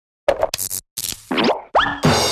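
Cartoon sound effects for an animated title logo: a quick run of short pops, then a brief hiss and two fast upward-gliding zips near the end.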